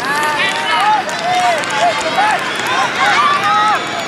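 High-pitched children's voices shouting and calling out in short cries, one after another, over a steady hum of background crowd noise.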